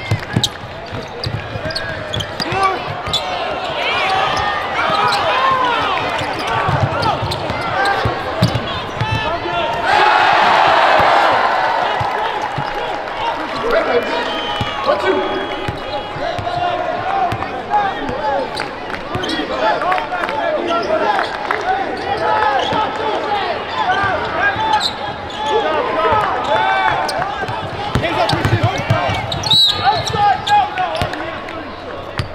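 Basketball dribbled on a hardwood court during live play, with indistinct voices calling out across a large arena. A louder swell of noise comes about ten seconds in.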